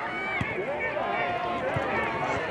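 Many overlapping voices of players and spectators calling out and talking at once, with two short low thumps, one about half a second in and one near the end.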